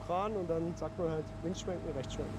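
A man's voice talking through most of the moment, over a faint steady hum.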